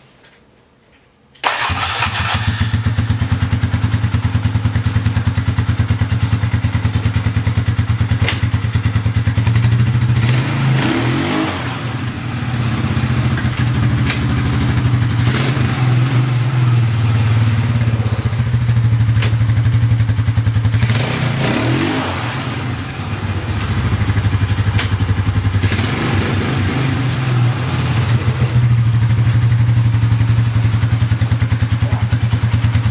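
Polaris Scrambler 500 ATV's single-cylinder four-stroke engine, fitted with a two-stroke slide carburettor, comes in abruptly about a second and a half in and runs steadily, then is revved up and let back down about four times.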